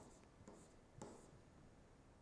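Faint taps and scratches of a stylus writing on a tablet screen, a few short strokes about half a second apart.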